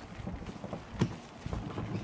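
Handling noise as a whole lamb carcass is pushed onto a rotisserie spit's metal prongs: scattered soft knocks and rustling, with one sharper knock about a second in.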